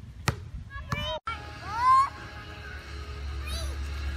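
A basketball bouncing once on asphalt with a sharp slap, then people's voices, with a loud rising exclamation about two seconds in.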